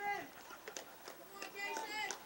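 Faint voices of spectators and players talking and calling out around a ballfield.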